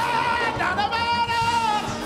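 Gospel praise song sung with music behind it: a singer's voice rises into one long held note, wavering slightly, over steady low accompaniment.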